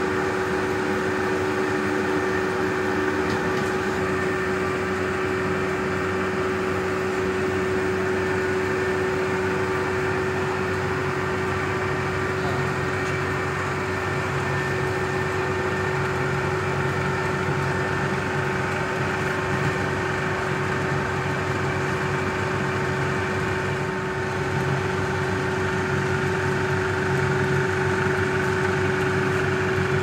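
Bauer B12 35 mm cinema projector running: a steady mechanical hum with a constant tone from its motor and film-transport mechanism.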